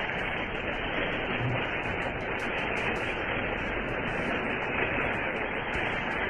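Steady, even hiss of static in the recording, with no words or other sounds over it.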